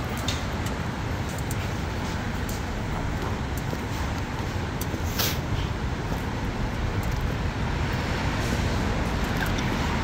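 Steady city street traffic noise: cars passing on the avenue alongside, an even wash of road sound with no single loud event.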